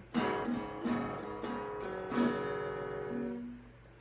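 Esteban Rock On acoustic-electric guitar being strummed: a handful of chord strokes over about three seconds that ring on and fade out near the end.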